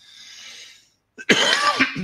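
A man draws a soft breath, then gives a loud, short cough about a second and a half in.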